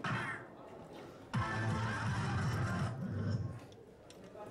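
A dart hits an electronic soft-tip dartboard, setting off the machine's hit sound effect, which fades within half a second. About a second later the machine plays a short electronic jingle for roughly two seconds, marking the end of the turn.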